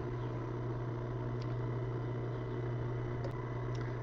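A steady low hum with a faint hiss over it and no distinct event, apart from a couple of very faint ticks.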